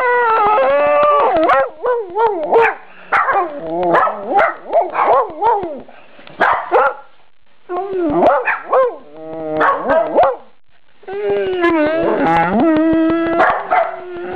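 A dog howling and whining in a long string of drawn-out, wavering calls, broken by a couple of short pauses, ending in one long held howl.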